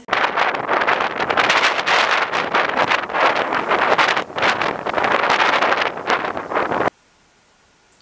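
Sea breeze blowing across a camera microphone on a beach: loud, gusty wind noise that drowns out everything else. It cuts off suddenly about a second before the end.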